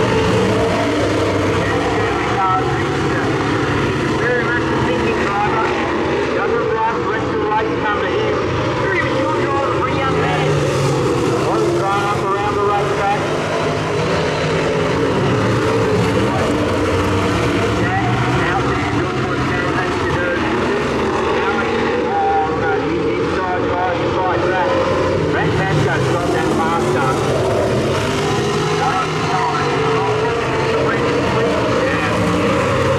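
Super sedan V8 engines racing on a dirt oval, the pack revving up and down as the cars pass and power through the turns.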